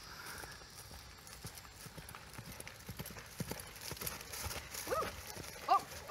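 Hoofbeats of a ridden horse on grass and dirt: a quick, irregular run of soft thuds that grows louder as the horse comes nearer. A brief voice is heard near the end.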